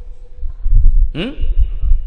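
Uneven low, dull thumping, with a short murmured "hmm" from a man about a second in.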